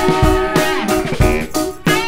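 Rock band music: guitars over bass and drums, with one note bending up and down early on. The band thins out briefly just before the end, then comes back in full.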